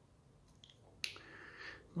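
A quiet pause: a sharp mouth click about a second in, followed by a faint inhale that grows toward the end, just before a man starts speaking.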